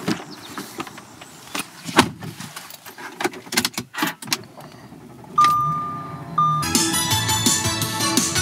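Car door handle clicking and the door knocking shut, then keys jangling and clicking at the ignition, followed about five seconds in by the engine starting with a steady electronic chime held for about a second and repeated briefly. Music with a beat comes in near the end.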